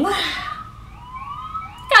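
A brief rush of noise, then several overlapping rising whistle-like glides, quieter than the talk around them.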